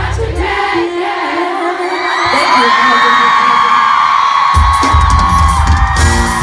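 Live pop band and singer heard from within the crowd. The bass and drums drop out while singing carries on and many fans scream and whoop. The bass and drums come back in about four and a half seconds in.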